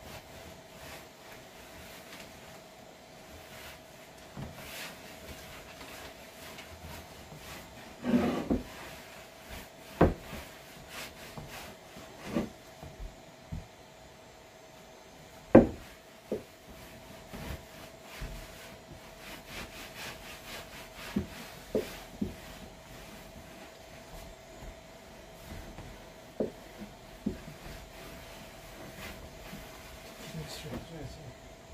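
A rag rubbing wood oil into an old wooden tabletop, with scattered short knocks on the wood, the loudest about halfway through.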